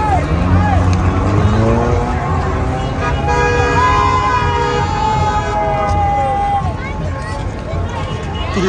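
Crowd chatter and voices on a busy street over a low, steady rumble of traffic. About three seconds in, a horn sounds for roughly two seconds.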